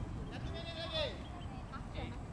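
A child's high-pitched shout: one drawn-out call of about half a second that drops in pitch as it ends, over a low steady rumble.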